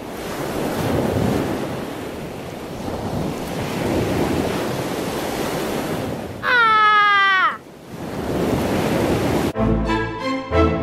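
Ocean waves sound effect, a steady rushing wash that swells and ebbs. About six and a half seconds in, one pitched cry slides downward over about a second, and music comes back in near the end.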